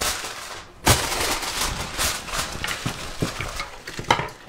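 Aluminium foil crinkling and crackling as it is pressed over a baking pan, with a sharp thump about a second in and a few small knocks later.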